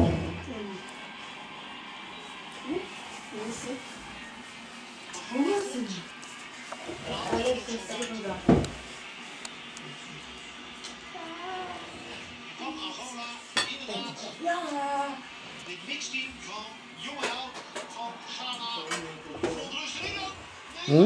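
Scattered talk from people in a room, with a few sharp clinks, a dull knock about eight and a half seconds in and a sharp click a few seconds later.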